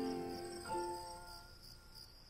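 The last held notes of a song's ending fade out, with a new note coming in just under a second in. Crickets chirp steadily underneath.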